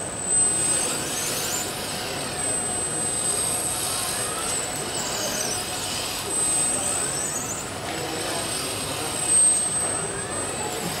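Electric joint motors of a multi-joint robot arm whining as the arm swings, the pitch rising and falling with each movement, over a steady high-pitched whine and background voices.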